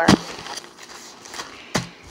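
Handling knocks as packs of paper towels are put down and picked up on a table. There is a sharp thump right at the start and another about three-quarters of the way through, with faint rustles and ticks between.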